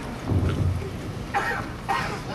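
Handling noise on a handheld camcorder's microphone: a low rumbling thump about half a second in, then scraping rustles near the end as the camera is moved.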